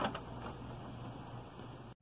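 Faint steady low hum of a running desktop computer, with quiet handling of a CD-R on its open optical-drive tray.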